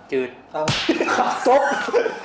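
A single sharp hand slap about two-thirds of a second in, followed at once by men laughing.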